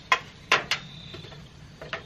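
A few sharp clicks from a metal tape measure handled against the house siding: two close together in the first second, another near the end. Crickets chirp steadily and faintly behind them.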